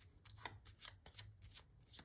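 Faint, irregular clicks of tarot cards being shuffled by hand, a few a second, over a low room hum.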